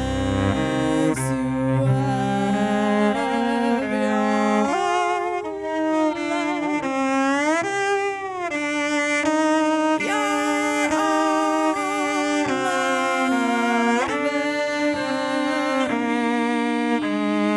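Solo cello bowed live, a melody of held notes with vibrato, starting in the low register and climbing higher, with a slide up and back down about halfway through.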